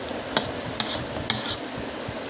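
Metal fork clicking and scraping against a plastic plate three times, about half a second apart, while picking up noodles.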